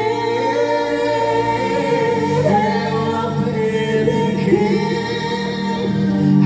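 A woman singing a slow devotional song into a microphone, with long held notes over a steady musical accompaniment.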